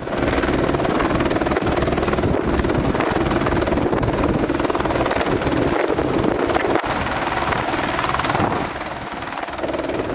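Rescue helicopter running close by with its rotor turning: a steady, even rotor beat under a thin high turbine whine, easing off a little near the end.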